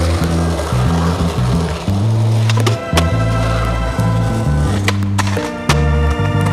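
Music with a prominent bass line, laid over skateboard sounds: wheels rolling on pavement and a few sharp clacks of the board, around the middle and again near the end.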